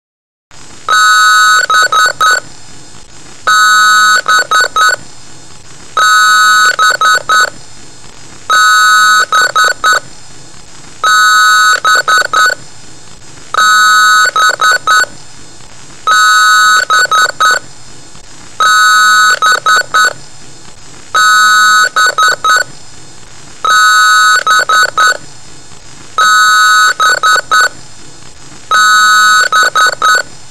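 Loud electronic beeping that starts about half a second in and repeats about every two and a half seconds. Each cycle is a held beep of several tones at once, about a second long, then a quick run of clicks, over a steady hum.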